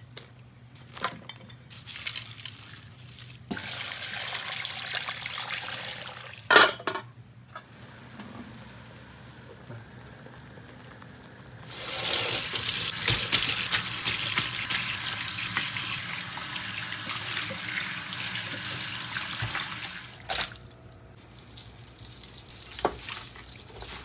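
Tap water running steadily into a stainless-steel colander in a kitchen sink for about eight seconds, starting just past the middle. Earlier come shorter stretches of kitchen handling noise and one sharp knock, the loudest sound, about a third of the way in.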